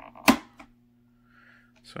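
A single sharp click, with a fainter one just after, as the strap latch on a drone's plastic propeller guard is undone.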